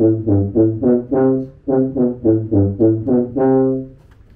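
Tuba playing a phrase of short, separately tongued low notes, about three a second, with a brief break partway through and a longer held note to finish.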